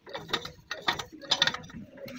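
Metal hand tool working at the front wheel hub of a Mahindra Bolero pickup: a series of metallic clicks and scrapes, with three louder bursts about half a second apart.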